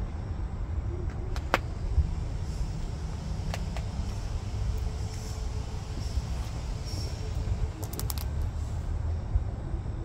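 Kioti compact tractor's diesel engine idling with a steady low rumble, with a few sharp clicks over it, several in quick succession about eight seconds in.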